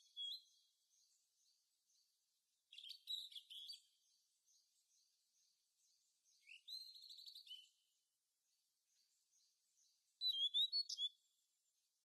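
Songbirds singing: three short, high song phrases a few seconds apart, the middle one a quick trill, with faint, evenly repeated high chirps in between.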